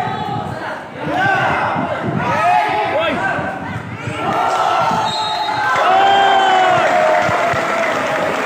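Basketball being dribbled on a concrete court under a crowd of spectators shouting and calling out, the shouting loudest about five to seven seconds in.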